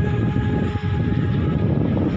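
Wind buffeting the microphone: a loud, steady, uneven low rumble.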